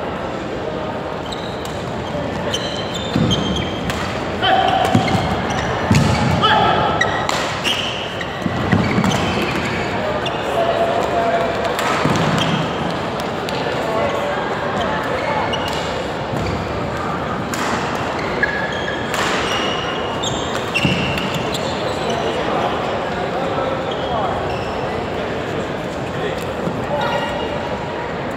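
Badminton play: rackets striking the shuttlecock in sharp cracks at irregular intervals, court shoes squeaking in short chirps, and thuds of footsteps on the court mat.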